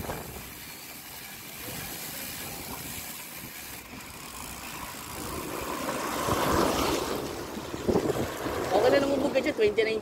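Riding noise from a bicycle on a wet concrete road: a steady rush of wind and tyre hiss that swells about six to seven seconds in, then eases.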